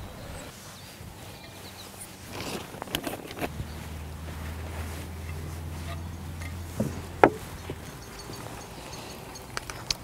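Compost being scooped and tipped into a large glazed pot: soft rustling with a few sharp taps, the loudest about seven seconds in. A low steady hum runs through the middle few seconds.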